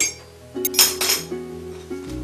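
A metal teaspoon clinking against a china teacup while stirring tea: one sharp clink at the start and a louder run of clinks about half a second later, over background music.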